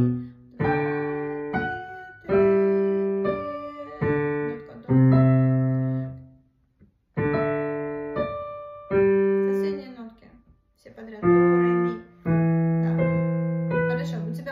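Digital piano playing a slow minuet passage: notes and chords struck one at a time, each ringing and fading before the next, with two short breaks, a little before halfway and about three-quarters of the way through.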